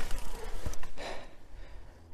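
Mountain bike rolling over a dirt trail: tyre noise and wind rumble on the microphone with a few sharp rattling clicks, fading away over the second half as the bike slows to a stop.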